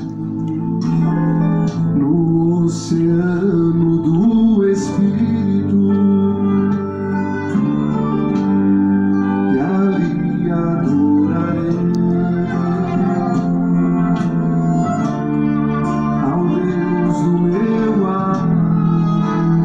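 A man singing a slow song in A minor, accompanied by acoustic guitar and accordion.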